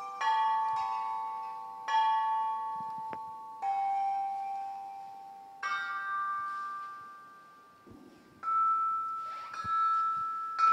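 A set of bronze chime bells (bianzhong) struck with hammers by two players, a slow tune of single strokes about every two seconds. Each stroke rings on in clear overlapping tones that fade slowly.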